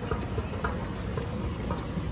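Schindler 9500AE inclined moving walkway running, a steady low rumble from its drive and moving pallets, with a few faint light clicks.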